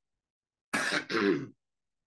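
A man clearing his throat once, a rough rasp followed by a short voiced grunt, the throat-clearing of someone with a head cold.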